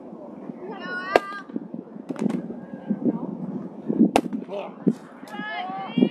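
Short, high-pitched shouts from young softball players, with a few sharp cracks and pops scattered between them, the loudest about four seconds in.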